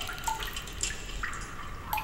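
Water dripping: a few single drops plinking, the clearest about a quarter second in and another near the end.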